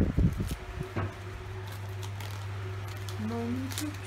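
Gift wrapping paper crinkling and tearing as a present is unwrapped, with a few heavy low thumps at the start and short crackles scattered through. A steady low hum runs underneath.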